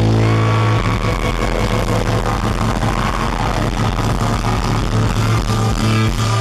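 Live hard-rock band playing loud through a venue PA: distorted electric guitars and bass holding a sustained low chord over drums and crashing cymbals, with a higher held tone above it.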